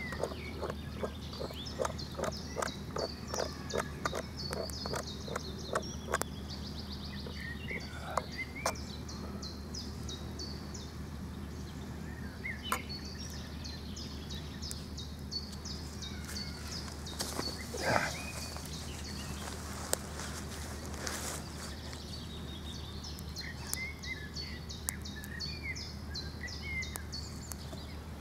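A spoon stirring oatmeal in a metal camping mug, a rhythmic clinking scrape about twice a second over the first few seconds. After that, steady outdoor background with birds chirping and a couple of brief rustles.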